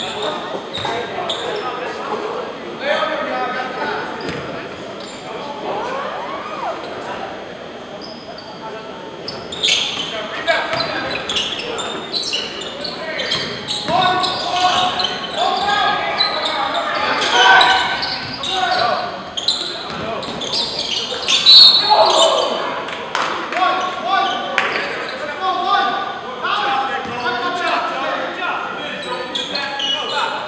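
Basketball bouncing on a hardwood gym floor during live play, with players' voices calling out, echoing in a large gym. It grows louder and busier about ten seconds in.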